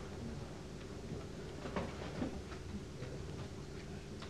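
Quiet room background in a conference room, with a few faint scattered clicks and small handling noises.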